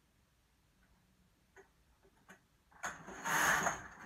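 A couple of faint clicks, then about three seconds in the carriage of a knitting machine is pushed across the metal needle bed, knitting a row. It makes a loud sliding clatter lasting about a second, and the return pass for the next row starts at the very end.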